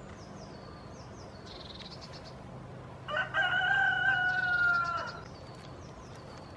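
A rooster crowing once, about three seconds in, ending in a long held note that falls slightly in pitch. Small birds chirp faintly throughout.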